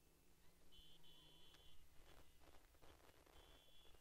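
Near silence, with two faint high beeping tones, the first about a second long and the second shorter near the end, and faint scattered ticks in between.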